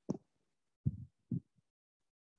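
Three soft, low thumps as a headset microphone is touched and adjusted by hand.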